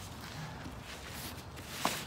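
Faint scuffing and shuffling of bodies and feet on a plastic tarp as a wrestler moves onto his downed opponent, with one short knock near the end.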